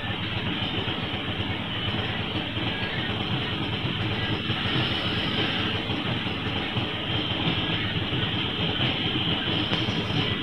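Auto-rickshaw's small single-cylinder engine running steadily, heard from inside the open passenger cabin.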